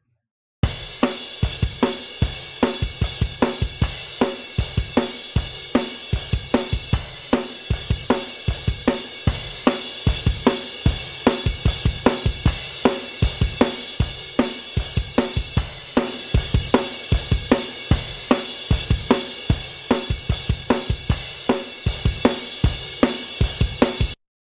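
A recorded drum kit track playing back in a steady beat, starting about half a second in. It is first heard dry, then partway through run through the Empirical Labs Arouser compressor plugin, which is heard as adding excitement and aggression.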